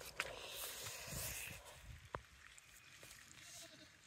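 Faint goat bleat, one drawn-out call lasting about a second and a half near the start, then a single sharp click about two seconds in.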